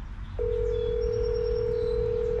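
Telephone ringback tone heard through a phone's speaker: one steady ring about two seconds long, starting about half a second in, the sign that the called phone is ringing.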